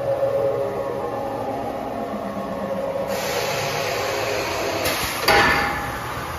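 Tube laser cutting machine moving its front chuck along the bed: a steady machine whine with a rasping grind, joined about halfway by a rising hiss. A sudden loud burst of hissing comes near the end.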